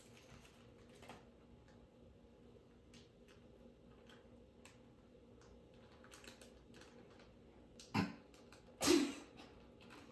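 Faint, scattered light clicks and ticks of small plastic parts and packets of a DIY candy kit being handled at a table, followed near the end by two short vocal sounds about a second apart.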